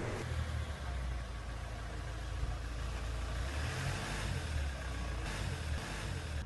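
Car engine running, a steady low rumble with a hiss of noise over it.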